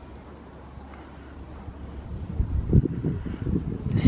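Wind buffeting the microphone: a steady low rumble that turns into louder, irregular gusts over the second half.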